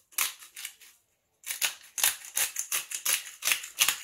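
Black peppercorn grinder being twisted over a bowl of vegetables: a quick run of sharp grinding clicks, about four a second, with a brief pause about a second in.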